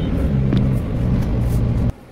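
Car running at cruising speed, heard inside the cabin: a steady low engine drone and road rumble that starts abruptly and cuts off suddenly just before the end.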